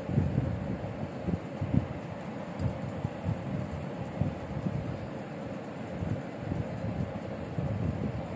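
Irregular low rumble of air buffeting a phone microphone, fluttering unevenly throughout.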